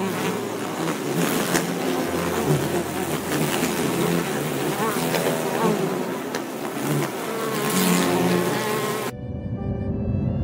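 Bees buzzing as they feed and fly around flowers, a dense, steady buzz that cuts off suddenly about nine seconds in.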